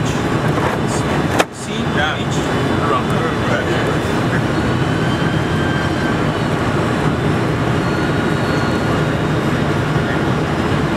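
Steady cabin noise inside a Boeing 747-400 airliner on approach: its engines and the airflow over the fuselage run at a constant level. About a second and a half in there is a single sharp click and a brief drop in level.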